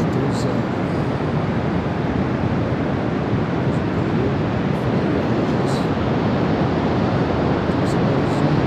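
Steady rush of wind buffeting the microphone, mixed with the wash of distant breaking surf.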